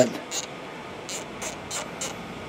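Low steady room noise with a few short, faint high-pitched ticks.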